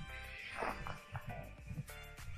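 Background music with sustained notes, and a brief falling swoosh about half a second in.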